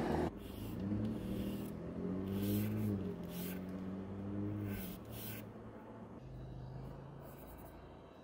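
A paintbrush scratching across a painting panel in a handful of short sketching strokes, over the low hum of a passing motor vehicle's engine that rises a little and fades after about five seconds.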